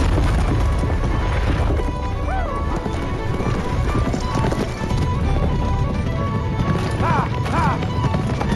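Galloping hooves of a two-horse chariot team with the chariot rumbling along behind, mixed under film score music.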